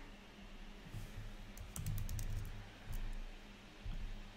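Typing on a computer keyboard: two short runs of keystrokes around the middle, entering a word.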